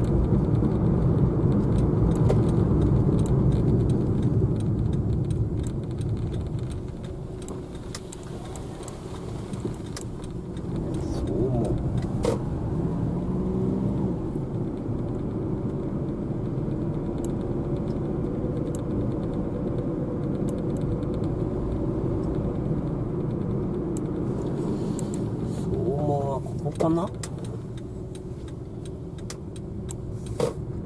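Car driving along a road, heard from inside the cabin: steady engine and tyre rumble, louder for the first few seconds and easing off around eight seconds in.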